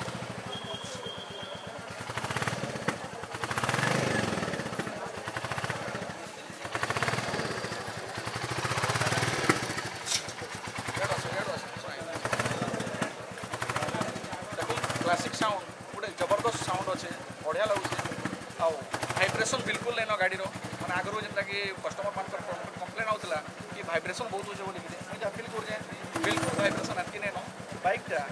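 Royal Enfield Classic 350 single-cylinder engine running just after start-up, rising and falling a few times in the first ten seconds, then running steadily with voices over it.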